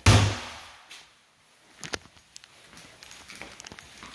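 A bathroom vanity cabinet door shut with one sharp knock right at the start, followed by a few faint clicks and taps.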